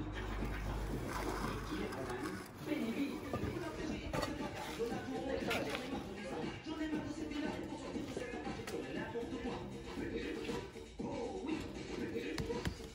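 A radio playing music and talk in the background, with a few short scrapes and knocks from thin-bed mortar and lightweight blocks being set on a wall course.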